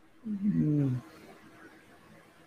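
A man's short wordless vocal sound, under a second long, its pitch wavering and then dropping at the end.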